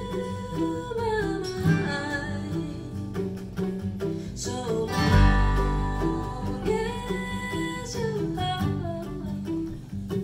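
Acoustic bluegrass-style string band playing live: a woman sings the melody over strummed acoustic guitars, mandolin, fiddle and upright bass. A brief low rumble sounds on the recording about five seconds in.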